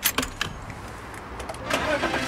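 A few sharp clicks of car keys and the ignition, then the car's engine starting near the end.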